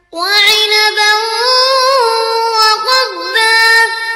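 A boy reciting the Quran in melodic murottal style. After a short breath pause he starts a new phrase just after the start, holding long drawn-out vowels with gliding pitch changes.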